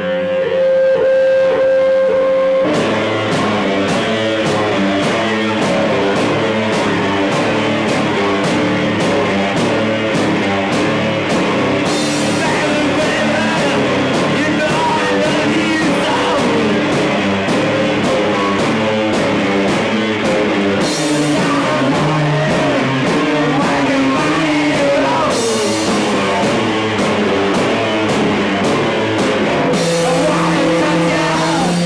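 Live rock band playing loud with electric guitar, bass and drums. Held guitar notes ring for the first couple of seconds, then the full band comes in with a steady drum beat, with stretches of crashing cymbals.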